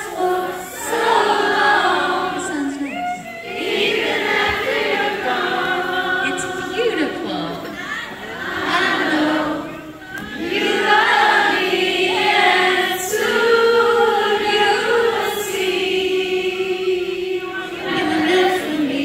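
Live singing of a pop ballad in a large concert hall, with many voices singing together as a crowd sings along.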